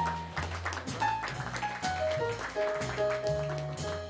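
Live jazz quartet of saxophone, piano, double bass and drums playing: drum and cymbal strikes over a stepping bass line, with short melody notes in the middle register.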